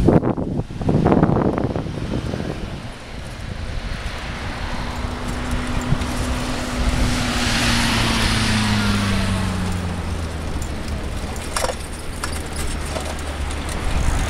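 A motorcycle passing on the adjacent road: its engine note rises into hearing, is loudest about halfway through, and falls in pitch as it goes by, over steady tyre and traffic noise.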